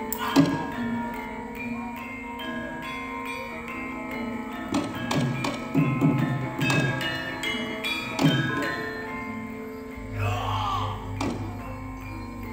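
Live Javanese gamelan music: bronze metallophones and gongs ringing in held, overlapping tones, punctuated by sharp drum and percussion strikes. A voice briefly joins near the end.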